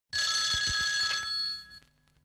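A bell-like ringing tone, several high pitches held together for about a second and a half and then fading out, with a couple of faint low thumps beneath it.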